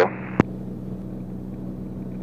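Steady low drone of a Beechcraft Bonanza's single piston engine and propeller in flight, heard from inside the cabin, with a single short radio click just under half a second in as a transmission ends.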